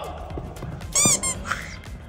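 Background music with a steady beat. About a second in, a thump and a short, high-pitched squeak, with a fainter squeak half a second later, as a person comes down out of a handstand onto rubber gym turf.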